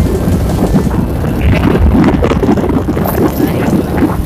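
Wind buffeting the phone's microphone on a moving motorcycle, a loud, steady low rumble mixed with the ride's engine and road noise.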